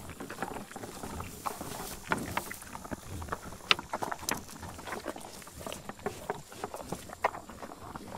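Bison chewing and crunching range cubes, close up. Irregular crisp crunches and clicks run throughout, with two louder sharp cracks, one about halfway through and one near the end.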